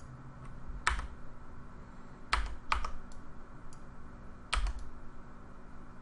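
Four separate clicks of computer input at a desk: one about a second in, two close together around two and a half seconds, and one more near five seconds, over a steady low hum.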